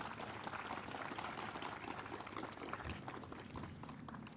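Light applause from a small crowd: a faint, steady clatter of many hand claps that eases slightly near the end.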